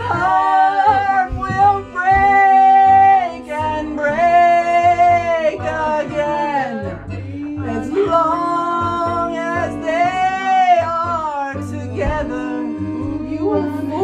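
A voice singing a slow melody in long, held notes with vibrato, phrase after phrase, over a steady instrumental accompaniment of sustained low chords.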